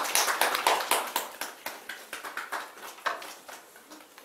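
A small group clapping in a small room, loud at first, then thinning out and fading over about three seconds.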